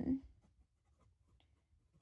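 TWSBI Go fountain pen with a broad nib writing on paper: faint, short scratchy strokes as letters are formed, coming in small separate bursts.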